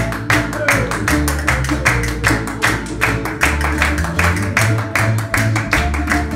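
Early-music ensemble playing a lively Baroque dance tune: plucked strings over a bass line, driven by a sharp percussive beat about four times a second.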